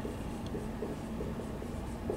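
Dry-erase marker writing on a whiteboard: a run of short strokes.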